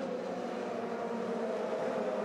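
A field of Formula 3 race cars running at speed in the opening lap, several engines blending into one steady mixed engine note.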